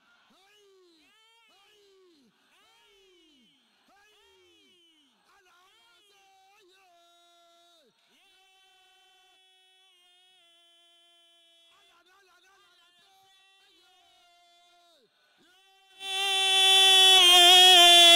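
Very faint voice calls, short falling cries about once a second, then longer held notes. About sixteen seconds in, loud chanting or singing voices break in suddenly, far louder than everything before.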